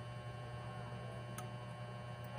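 Steady low electrical hum, with one faint tick about one and a half seconds in.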